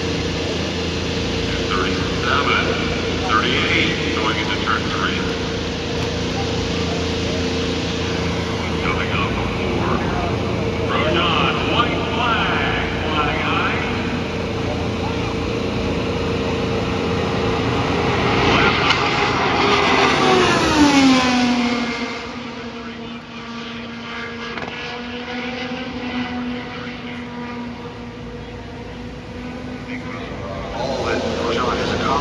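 Honda-powered IndyCar running flat out at qualifying speed: a steady, high engine note that swells and drops by nearly an octave as the car passes about two-thirds of the way through, then carries on lower as it goes away down the track.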